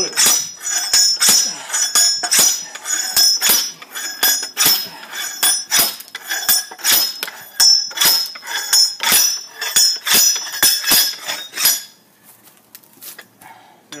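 Hand-operated steel wedge log splitter striking again and again into a round of wet, freshly cut maple, about two sharp metallic clanks a second with a short ring after each. The dense hardwood takes many blows before it splits, and the strikes stop about twelve seconds in.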